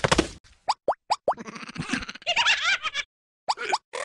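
Cartoon plop sound effects: a quick run of short pops, each sliding up in pitch, then a wobbly warbling sound, a brief silence, and a few more rising plops near the end.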